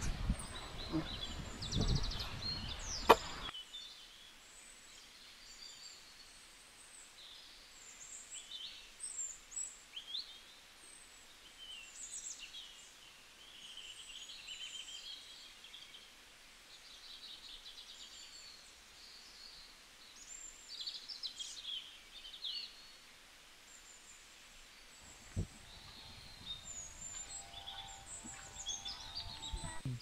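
Birds chirping and calling on and off in short, high notes, faint over quiet outdoor background, with a sharp click about three seconds in.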